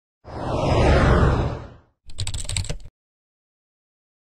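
Intro logo sound effect: a whoosh that swells and fades over about a second and a half, followed by a quick run of typewriter-like clicks.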